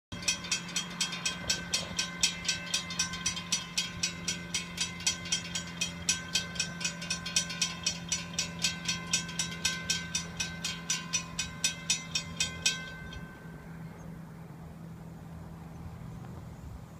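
Railroad crossing warning bells ringing rapidly and evenly, about three strikes a second, as the crossing gates lower ahead of a train. The bells stop suddenly about 13 seconds in, once the gates are down, leaving a low steady hum.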